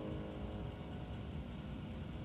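The last piano chord dying away within the first second, leaving a steady low background hiss and rumble.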